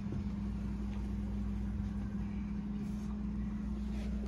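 A steady low hum with a low rumble beneath it, unchanging throughout.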